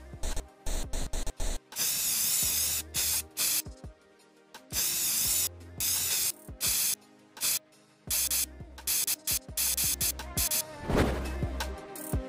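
Aerosol spray-paint can hissing in several bursts of a second or so each, laying dark paint along the edge of a cardboard stencil, over background music.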